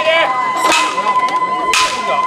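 Festival hayashi flute holding a long high note, dropping to a lower note near the end, with shouting voices and two sharp cracks about a second apart.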